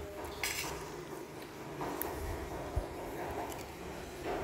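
Metal spoon scooping rice against a plastic plate: a few light clicks and scrapes over quiet room noise.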